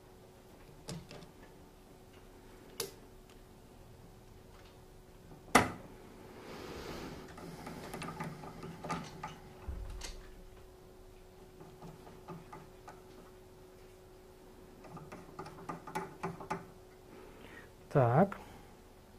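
Scattered small metal clicks and taps of manicure nippers and their clamp holder being positioned against a sharpening machine's disc, the machine not yet switched on. One sharp click about five and a half seconds in, a soft rustle after it, and a faint steady hum underneath.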